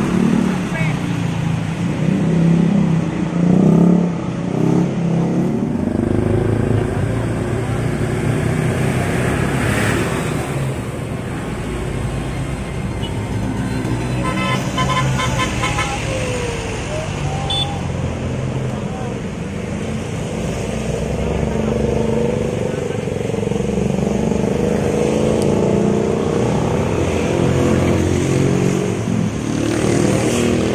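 Buses' diesel engines running as they move slowly past at close range, amid street traffic and motorcycles. A vehicle horn sounds around the middle.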